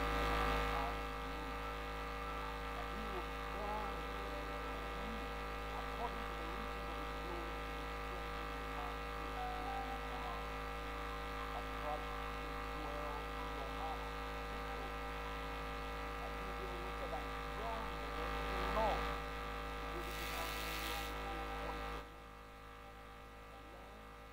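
Electrical mains hum and buzz on the audio feed, made of many steady tones at once. It comes in abruptly at the start and cuts off suddenly about two seconds before the end.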